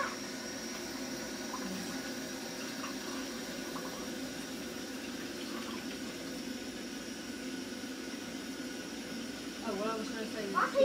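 A steady, even rushing noise, with faint distant voices now and then.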